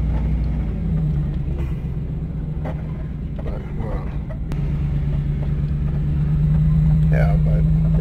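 Van engine and road noise droning steadily in the cabin, growing louder about five seconds in.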